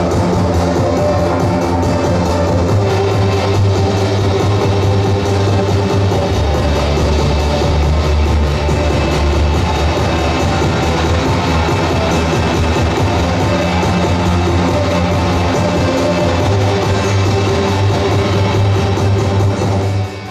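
Loud live music played on a table of electronic gear through a PA, with a heavy, steady bass line; it cuts off suddenly at the end.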